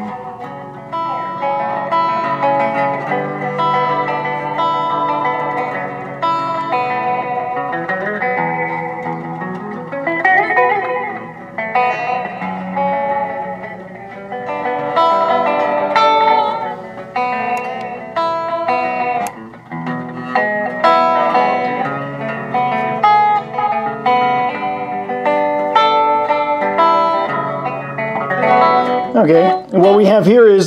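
Electric guitar played through a Fender Mirror Image Delay pedal, with a run of notes and chords whose echo repeats trail on behind each one.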